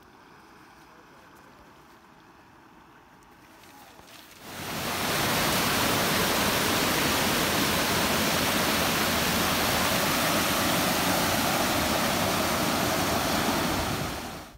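Mountain stream rushing and cascading over boulders, a loud steady rush of water that starts suddenly about four seconds in after faint background sound, and cuts off at the end.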